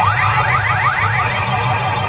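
A quick run of about seven rising electronic chirps over a steady low musical beat; they stop about a second and a half in and the beat carries on.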